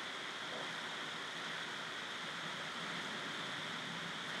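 Faint, steady hiss of room tone or recording noise, with no distinct handling sounds.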